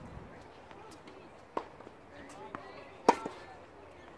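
Tennis ball struck by racquets in a baseline rally: a fainter, distant hit about a second and a half in, then a much louder close hit about three seconds in, with a soft bounce just before it.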